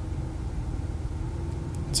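1994 Ford Ranger's 4.0-litre V6 idling, a steady low rumble heard from inside the cab.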